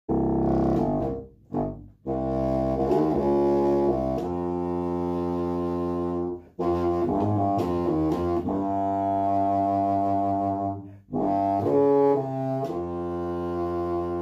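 Contrabassoon playing a slow phrase of long, low sustained notes that step from pitch to pitch, with three short gaps between phrases.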